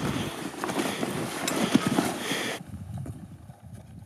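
Climbing boots crunching and scuffing in snow in an uneven series of steps. The sound drops away abruptly about two and a half seconds in, leaving a quieter, duller stretch.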